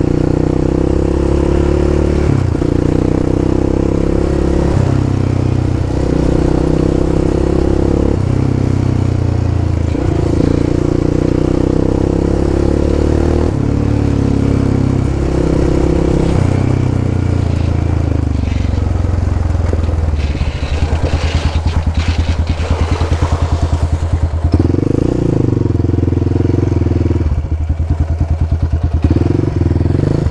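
Yamaha Raptor 700's single-cylinder four-stroke engine running under way, its pitch stepping up and down every few seconds with throttle changes. In the second half it twice drops to a low, pulsing beat where the separate firing strokes can be heard.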